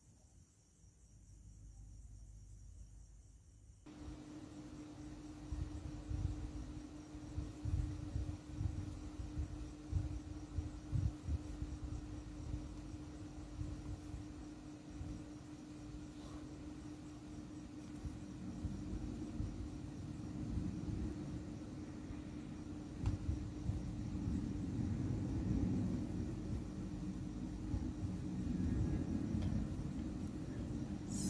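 A steady low hum with irregular low bumps and rumble under it, starting about four seconds in after a faint low rumble.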